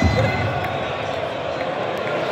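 Large arena crowd: many voices at once in a steady din, with a low thump right at the start.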